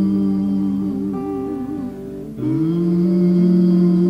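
Worship band's instrumental break with electric guitars: long held notes with a slow vibrato, moving to a new chord about two and a half seconds in.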